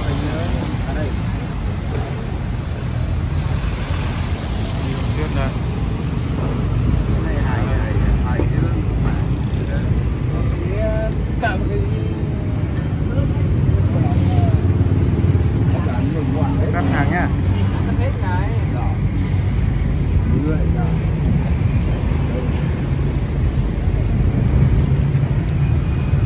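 Street ambience: a steady low rumble of road traffic, with scattered distant voices chatting now and then.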